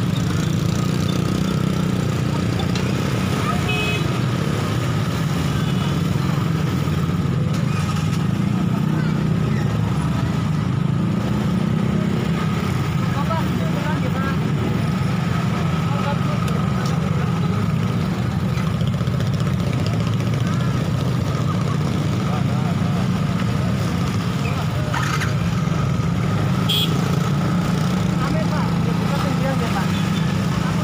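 A steady low rumble, like engines or road traffic, runs throughout with indistinct voices of people talking under it.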